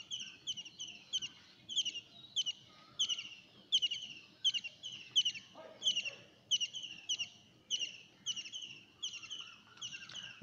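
A small bird chirping over and over, about two or three short, high chirps a second.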